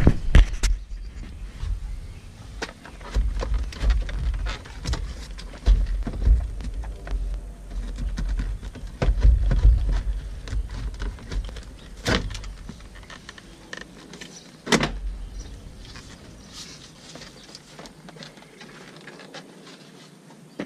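Plastic interior door trim panel of a Nissan Pathfinder being worked up and lifted off the door: irregular low bumping and rubbing of the panel against the door, with two sharp clicks about 12 and 15 seconds in as it comes free.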